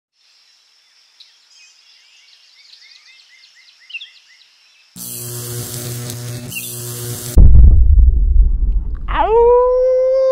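Faint birdsong, then an electric crackling buzz for about two seconds, cut off by a loud, deep boom that rumbles on. Near the end a man's long, loud shout begins.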